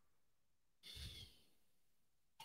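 Near silence, with one faint breath out through the nose or mouth about a second in.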